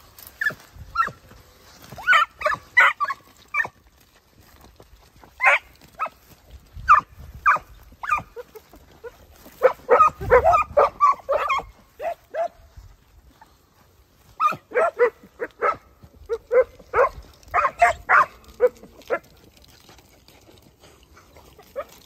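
Segugio Italiano scent hounds giving voice while working a scent: bouts of quick, high yelps and barks, several in a row, with pauses of a second or two between bouts.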